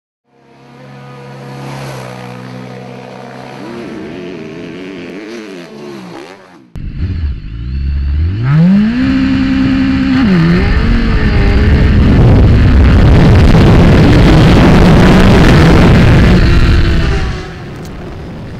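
BMW HP4 superbike's inline-four engine heard onboard on a race track. It holds a steady, moderate note for the first several seconds, then turns suddenly much louder, climbs steeply in pitch and dips once about ten seconds in. It then runs hard and loud at full power until it drops away shortly before the end.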